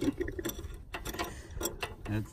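Light, irregular metallic clicks and ticks as fingers turn a small bolt on a steel tonneau-cover clamp bracket.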